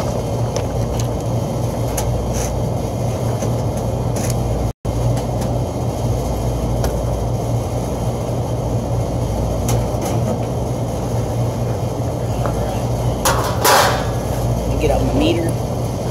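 Steady low mechanical hum of rooftop HVAC units running, with a few light clicks and a short rushing noise about thirteen seconds in.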